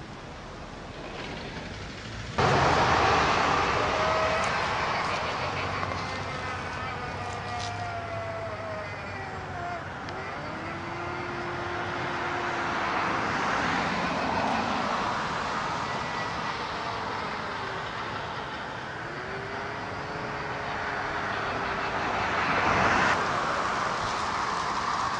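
Kmart flying ghost decoration playing its spooky sound effect through its small built-in speaker: a windy hiss with long swooping tones that rise and fall, starting suddenly about two seconds in.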